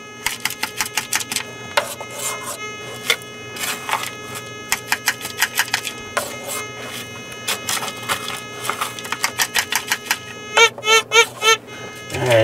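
Crushed clay and gravel rattling in a plastic gold scoop as it is shaken and tapped again and again, so that anything heavy drops to the bottom. Under it a metal detector gives a steady tone, and it sounds four quick chirps near the end as the scoop passes near its coil.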